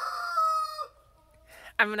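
Rooster crowing: one long held call that ends with a falling note just under a second in.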